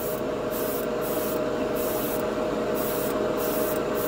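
Airbrush spraying Alclad candy enamel onto a metal spoon: a hiss of air and paint that comes and goes in short bursts, over a steady low hum.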